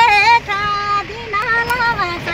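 A woman singing in a high voice, a few held, slightly wavering notes with short breaks between phrases, over the low hum of the vehicle's engine and road noise inside the cabin.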